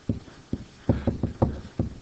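Pen stylus knocking and tapping against a hard writing surface as words are handwritten: a quick run of short, irregular knocks.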